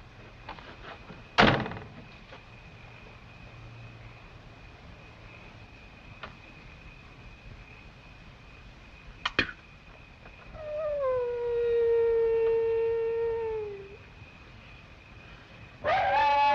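A car door thunks shut about a second and a half in. A few seconds later a few small clicks come, then a single long canine howl of about three seconds that slides down a little at the start, holds steady, and drops away at the end.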